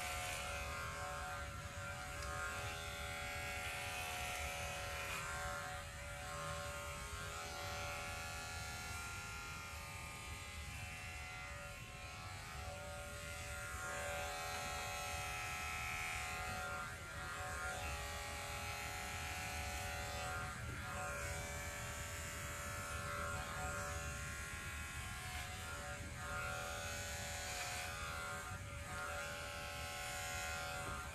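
Corded electric hair clippers fitted with a number two guard, running with a steady buzz as they are pushed through short hair on the scalp.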